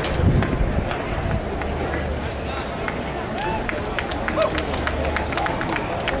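Stadium crowd background with a distant, echoing public-address voice, and scattered short clicks throughout.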